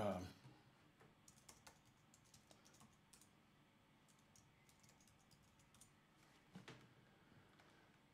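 Faint, scattered clicks of typing on a computer keyboard, after a short murmured "um" at the start.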